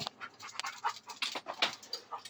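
A dog panting, with short, irregular breaths and scuffs.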